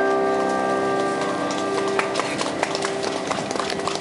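The song's final keyboard chord is held and rings out, fading away by about halfway through. Scattered handclaps from a small audience start up and grow denser toward the end.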